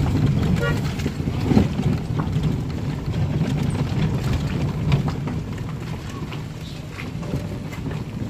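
Car cabin noise while driving slowly over a rough dirt and gravel road: a steady low rumble of tyres and engine with scattered knocks and rattles from the bumps.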